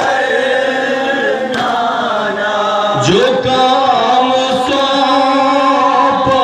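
Male voices chanting a noha, a Shia lament, through a microphone and loudspeaker: the lead reciter holds long sung lines, backed by the group. A sharp chest-beating slap lands about every second and a half.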